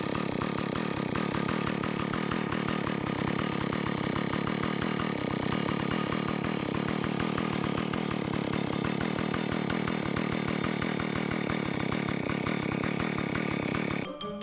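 Chainsaw engine running steadily at a constant speed, with no revving up or down.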